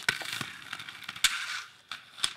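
Aggressive inline skates knocking and scraping on a concrete ledge: two sharp knocks about a second apart, each followed by a short scrape.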